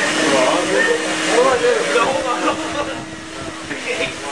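Shop vac running with a steady hum and hiss while it sucks the air out of a trash bag wrapped around a person, vacuum-sealing him. People are laughing and talking over it.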